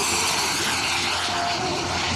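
Turbine-powered model jet passing low and fast, a loud rushing whine that swells and bends in pitch as it goes by, with background music underneath.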